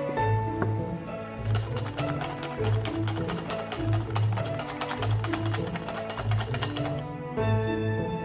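Light background music with a steady pulsing bass. From about a second and a half in until near the end, a wire whisk clicks rapidly against the side of a bowl, whipping dalgona coffee.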